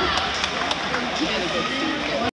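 Many voices at once: spectators talking and calling out in an indoor pool hall, with a few sharp clicks.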